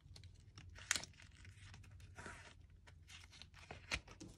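Paper banknotes rustling and a soft plastic zip cash envelope crinkling as bills are handled and slid in, with a sharp click about a second in and another just before the end.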